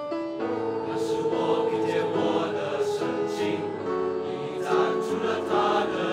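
Mixed-voice school choir singing an art song in parts, the voices coming in together sharply at the very start after a quiet piano passage, then continuing steadily.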